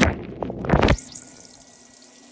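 A phone falling into a washer tub of water: splashing and sloshing heard muffled, as from under water, for about the first second, then a fainter, steady water sound.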